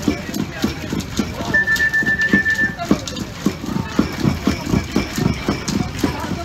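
Fast, rhythmic knocking, about three to four strokes a second, with a short steady high tone sounding for about a second a little after the start.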